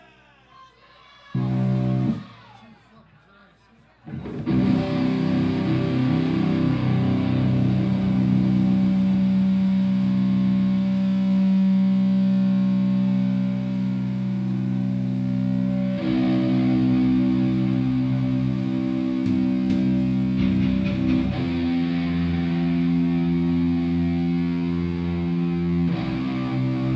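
Heavily distorted electric guitar and bass through stage amplifiers, holding long ringing chords with no drums. A short chord about a second in is followed by a pause. From about four seconds in a sustained chord rings on, shifting to new chords twice later on.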